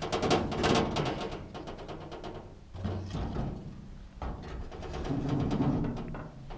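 Handling noise of a head-mounted action camera being strapped on: a run of quick knocks and rubbing on the housing in the first two seconds, then scattered knocks and a low rumble.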